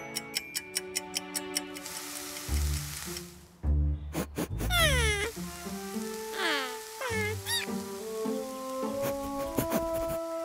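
Wind-up kitchen timer ticking quickly, about six ticks a second, for the first second and a half, then a cartoon music score of held notes with a quick run of high, falling squeaks a few seconds in.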